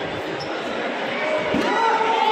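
Dull thuds on a hall floor, several in a row, with a hubbub of voices in a large echoing hall; a voice rises clearly near the end.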